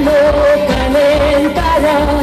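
Live pop song with a woman singing over the band, holding one long wavering note before stepping to a new pitch near the end, over a steady bass beat.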